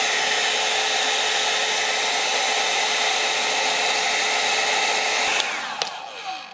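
Handheld hair dryer blowing steadily, its motor humming at a constant pitch under the rush of air. About five seconds in it is switched off and the motor winds down with a falling pitch.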